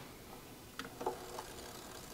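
A few faint clicks from a record turntable being readied to play a 45 single, about a second in, over quiet room hiss.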